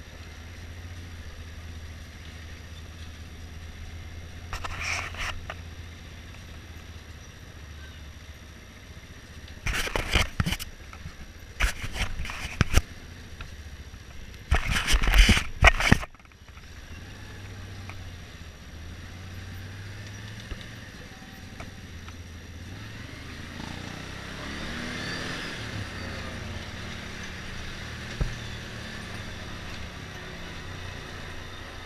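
ATV engine running at low speed, a steady low hum. From about ten to sixteen seconds in, loud knocks and rustles from the handlebar-mounted camera being handled drown it out. The engine sound swells with a rising and falling pitch around twenty-five seconds in.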